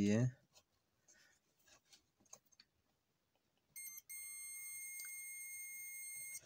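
DT9205A digital multimeter's continuity buzzer sounding a steady high beep about four seconds in, after a brief blip, as the probes bridge the car power-window switch contacts: the contacts, cleaned of carbon, now conduct. Before it, faint clicks of the probe tips on the switch.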